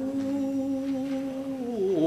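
A man's voice sustaining one low sung note between lyric phrases of a Japanese song. The note is soft and hum-like, holds steady, then dips in pitch near the end.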